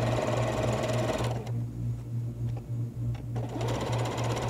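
Domestic electric sewing machine stitching a seam through layered quilting cotton. It runs steadily, drops to slower, quieter stitching for about two seconds in the middle, then speeds up again near the end.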